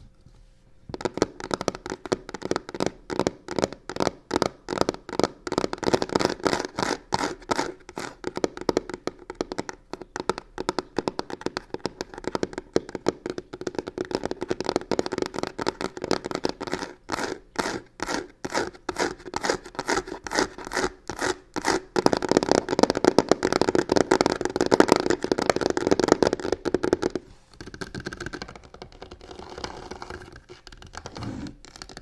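Long fingernails scratching and tapping fast on a box covered in crocodile-embossed leather-look material: a dense run of quick strokes that starts about a second in, grows loudest a few seconds before the end, then eases off.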